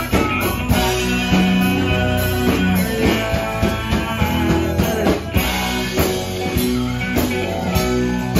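Live country-rock band playing at full volume: a Fender Telecaster electric guitar, an electric bass and an acoustic guitar over a steady drum beat, with several voices singing together partway through.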